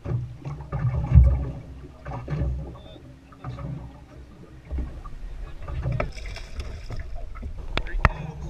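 Open-air ambience on a small boat drifting on choppy water: a low, uneven rumble of wind and water against the hull, with faint indistinct voices and a few soft knocks. A sharp click comes just before the end.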